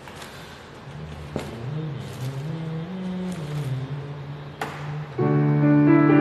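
An electronic keyboard with a piano sound plays a loud, full chord about five seconds in, which rings on. Before it, a soft low melody slides up and down in pitch.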